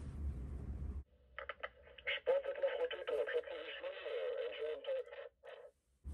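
A voice coming over a VHF marine radio's speaker for about four seconds, thin and narrow-toned, answering a call to the lock. Before it, a low hum drops away about a second in.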